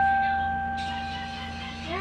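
A single held note on a portable electronic keyboard, struck just before, sustaining and slowly fading out, ending near the end.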